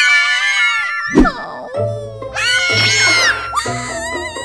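Cartoon characters wailing in high-pitched cries, two long wails with a sharp thump between them about a second in, over background music.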